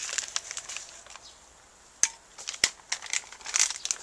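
Crinkly packet of instant cappuccino being torn and handled, rustling on and off, with two sharp knocks about two seconds in.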